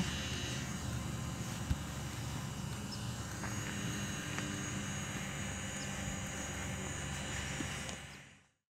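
DJI Mavic Pro quadcopter hovering some distance away: a steady propeller hum over outdoor background noise, with a single sharp click nearly two seconds in.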